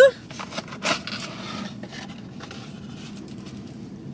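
Cardboard takeout box being handled and opened, with a few short rustles and taps in the first second, the loudest about a second in, over a steady low background hum.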